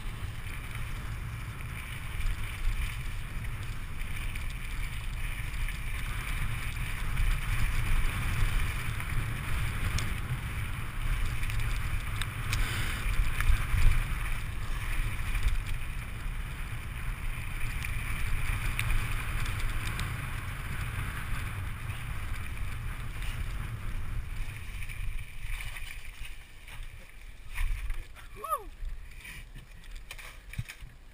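Wind buffeting an action camera's microphone and mountain bike tyres rumbling over a gravel track at speed. The noise eases near the end as the bike slows, with a brief falling squeal.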